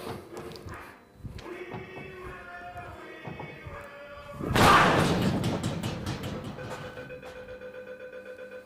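Knockout boxing arcade machine: its electronic tune plays, then a hard punch slams into the punching bag about halfway through, loud and ringing on for a couple of seconds. A steady electronic tone with light pulsing follows as the machine counts up the score.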